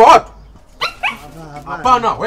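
A dog barking, with a man shouting.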